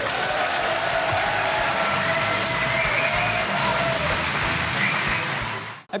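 Studio audience applauding at the close of the show, with a few faint held tones over the clapping. The applause cuts off abruptly near the end.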